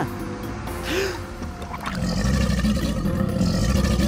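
Background music, with a low growl sound effect for a toy crocodile starting about halfway through.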